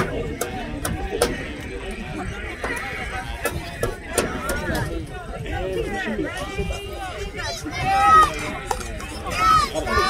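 Overlapping talk and calls from sideline spectators at a youth football game. Two loud, high-pitched shouts stand out about eight and about nine and a half seconds in.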